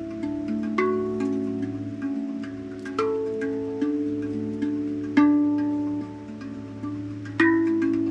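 Handpan (steel hand drum) played with the hands: single notes struck every half second to a second, each ringing on and overlapping the next, with one stronger strike about five seconds in.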